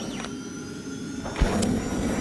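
Outro sound effect for an animated logo: a swelling whoosh, then a sharp low thump about one and a half seconds in, followed by a louder rushing swish.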